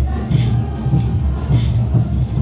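Live brass band playing a morenada for a street dance. A bright clash lands on the beat about every 0.6 seconds over a heavy bass line.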